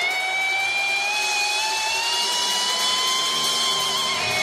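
A single held electric guitar note with amplifier feedback, slowly rising in pitch, with no drums under it.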